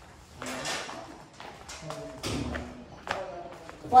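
A few separate taps and thumps, like footsteps on a tiled floor, with a faint voice in the background.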